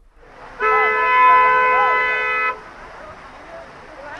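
A horn blown once, a steady held note lasting about two seconds, over continuous outdoor background noise.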